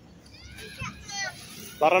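A young child's high-pitched voice making short calls, then a man's voice saying a name near the end.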